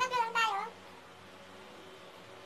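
A high-pitched, wavering, meow-like cry that breaks off about two-thirds of a second in, leaving quiet room tone.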